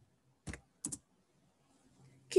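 Three short, sharp clicks, one about half a second in and two in quick succession just before the one-second mark.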